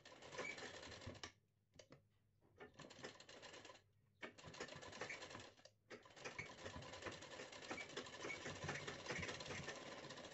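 Black straight-stitch sewing machine stitching lace trim onto fabric: a quiet, fast, even rattle of the needle mechanism in four runs, stopping briefly between them as the fabric is guided, the last run the longest.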